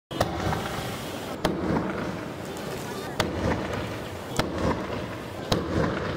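Fireworks going off: five sharp bangs spaced a second or more apart, over a continuous crackling hiss of burning effects.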